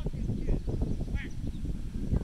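Wind buffeting the microphone, a gusty low rumble, with a short distant call just over a second in.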